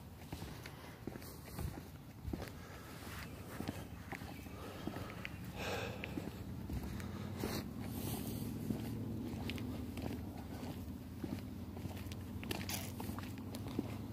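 Quiet footsteps on a paved street, with rustling as the phone is carried. A faint low steady hum comes in about halfway through.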